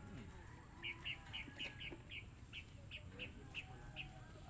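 A small bird chirping: a steady run of short, high chirps, about three or four a second, starting about a second in. Faint voices in the background.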